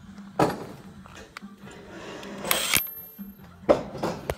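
Handling noise from a Makita DTW285Z cordless impact wrench being picked up off a concrete floor: a few short knocks and rustles, the loudest a brief burst a little past halfway, over a faint steady hum.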